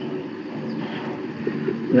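Steady low hum and hiss of a voice-chat audio feed, with a few faint steady tones and no speech.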